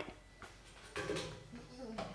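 Mostly quiet, with a single faint knock about half a second in and a brief soft rush of noise about a second in, from a climber's hands and body moving across hanging steel gym obstacle bars.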